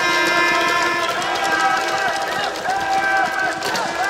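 Badminton court shoes squeaking on the court mat as players shuffle and set their feet: several overlapping high squeaks, some drawn out and some bending up and down in pitch.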